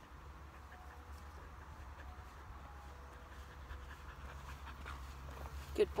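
A dog panting faintly, a little louder near the end as it comes closer.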